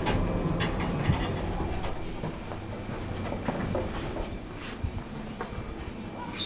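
A Thyssen elevator's two-panel sliding doors opening with a rumble and a sharp knock about a second in, followed by a few irregular footsteps.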